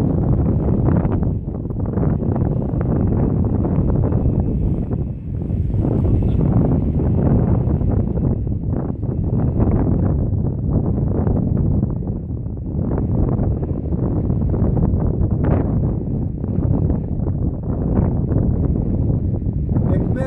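Wind buffeting the microphone: a loud, continuous low rumble that swells and dips.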